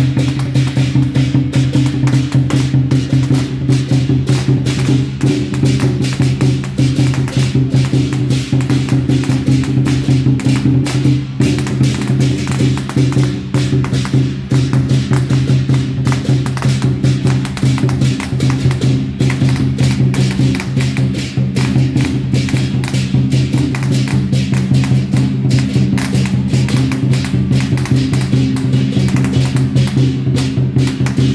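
Fast, continuous temple-procession percussion: a dense stream of rapid drum and wood-block-like strikes over a steady low tone, keeping up without a break.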